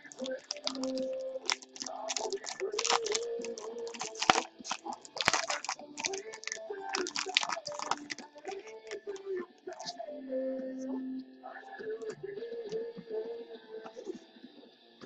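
A foil trading-card pack being crinkled and torn open by hand, in dense irregular crackles that are heaviest in the first half and thin out later.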